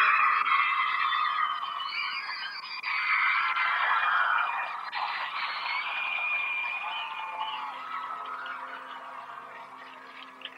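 Studio audience of teenagers and kids screaming and cheering, loudest at the start and slowly dying away, with music faintly underneath near the end.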